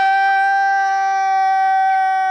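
A man's voice holding one long, high sung note, loud and steady in pitch.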